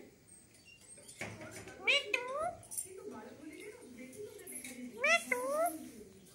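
Pet parakeet giving two short, meow-like calls about three seconds apart, each sweeping up and then down in pitch. Faint voices can be heard underneath.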